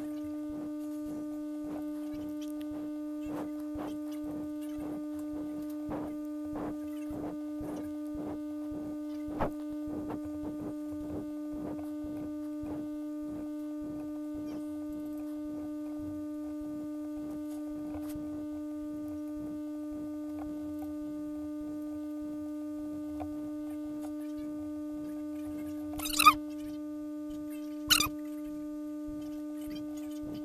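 Steady electrical hum, a constant pitched drone. Through the first half, faint quick clicks come at about three a second. Two short, sharp, louder sounds follow near the end.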